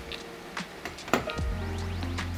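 Soft background music with a steady low tone, and a few light clicks and taps about a second in as a magnetic sign is pressed onto a dishwasher door.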